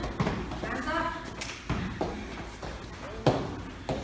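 Scattered thuds of taekwondo sparring: kicks striking padded chest protectors and feet landing on foam mats, about five hits, the loudest a little over three seconds in. A faint voice is heard briefly about a second in.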